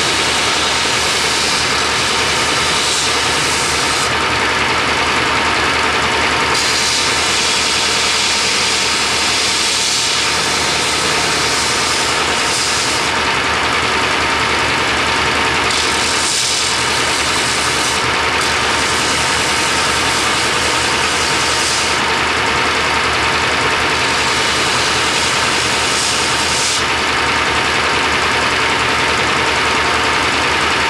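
Belt grinder running steadily with a knife workpiece held against its abrasive belt. A high hiss of abrasive on steel grows and fades every few seconds as the work is pressed on and eased off.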